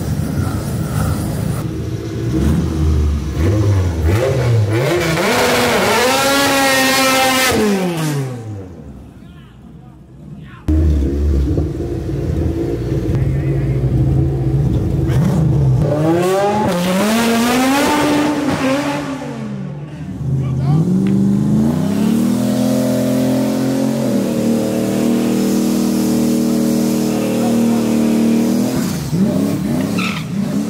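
Street-race car engines revving up and down in long rises and falls, with a sudden drop to quieter sound about eight seconds in and a sudden return a couple of seconds later. Near the end an engine is held at steady high revs for several seconds as a red Ford Mustang Cobra spins its rear tyres in a burnout.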